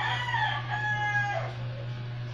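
A rooster crowing once: a single call of about two seconds with held notes, ending in a falling note about a second and a half in.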